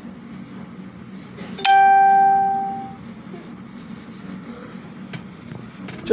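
A single chime rings out once, about two seconds in: a sudden ding that holds briefly and then fades over about a second.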